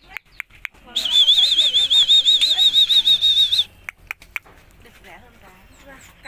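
A loud, high warbling whistle, an evenly trilling tone that starts about a second in and lasts a little under three seconds, with a few sharp clicks before and after it.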